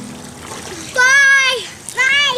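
Water splashing in a small inflatable pool as children kick and play, then a child's high-pitched drawn-out shout about a second in, with another starting near the end.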